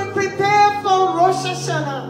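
A woman singing into a handheld microphone in long held, gliding notes, over background music with steady sustained low chords.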